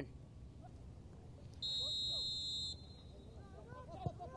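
A referee's whistle blown once: a single steady, shrill blast of about a second, starting a little after one and a half seconds in, over faint field ambience.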